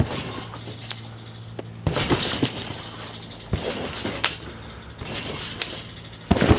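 A person bouncing on a large backyard trampoline: a few sharp, irregularly spaced thumps from the mat and springs, over a steady low hum.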